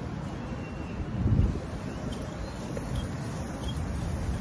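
Wind buffeting the microphone: a steady low rumble with a stronger gust about a second in.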